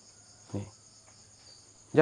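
Crickets chirring steadily in the background, a continuous high-pitched trill that carries through the pause in the talk.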